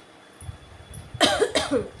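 A woman coughing twice in quick succession, a little over a second in.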